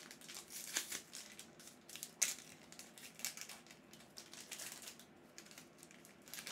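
Foil wrapper of a Magic: The Gathering draft booster pack being handled and torn open: a run of crinkles and crackles, the sharpest about two seconds in.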